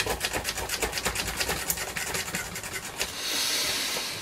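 Hacker RP75 transistor radio chassis being handled and turned on a cutting mat: a fast run of small clicks and rubs for about three seconds. About three seconds in, this gives way to a steady hiss lasting about a second.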